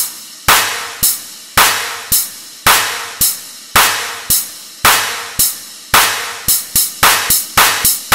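Breakdown in an electronic dubstep track: the bass drops out, leaving a single drum hit repeating about twice a second, each ringing out and fading, speeding into a quick roll near the end.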